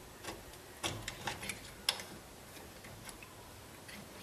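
A few light clicks and knocks as a Porsche 944 Brembo brake caliper is handled against the steel mounting tabs on a spindle; the sharpest click comes about two seconds in.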